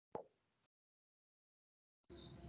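Near silence, with one short click just after the start.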